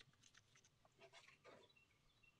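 Near silence: faint outdoor background with a few soft clicks and rustles.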